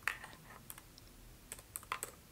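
A few faint, separate clicks from someone working a computer, about five spread over two seconds, the first the strongest.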